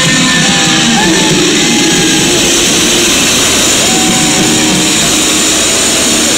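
A live 1980s rock tribute band playing loudly through the hall's sound system, heard from within the crowd.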